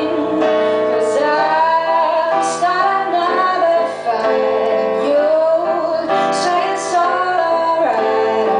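A woman singing a song live at the microphone, with wavering held notes, over instrumental accompaniment.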